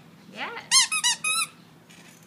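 Plush dog toy's squeaker squeezed about four times in quick succession, each squeak a short, high, rising-and-falling chirp.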